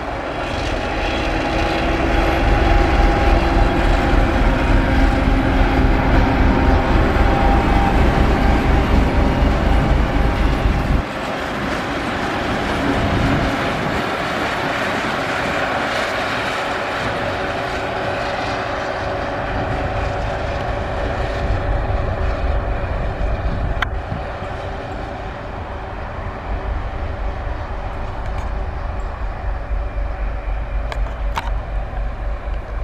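Diesel engine of an S200 shunting locomotive working under load as it hauls a dead ST40s locomotive past, a loud pulsing low rumble with wheel noise on the rails. The sound changes abruptly about eleven seconds in and then carries on more quietly as the train passes and draws away.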